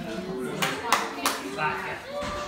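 Three sharp hand claps in quick succession over indistinct voices of people talking in a room.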